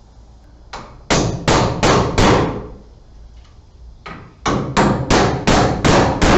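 Claw hammer driving the nails of a blue plastic electrical box for a smoke detector into a wooden wall stud. There are two runs of blows, about a second in and again from about four seconds, each a light tap followed by four or five hard strikes that ring briefly.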